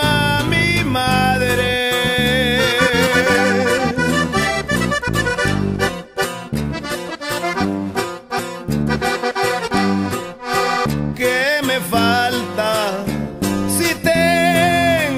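Norteño music with no singing: an instrumental break led by a button accordion playing a warbling melody over a steady strummed bajo sexto and bass rhythm.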